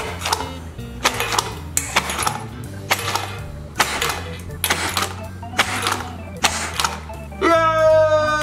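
Background music with a steady beat, over a run of sharp clicks from a frog-mouth party blower's tongue flicking out and knocking over plastic-based fly cards. Near the end, a long held cheer.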